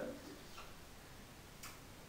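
Faint ticks of a marker pen on a whiteboard as letters are written, the clearest one about a second and a half in, over low room tone.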